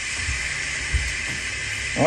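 Steady background hiss with a low rumble underneath and a soft thump about a second in: room noise between lines.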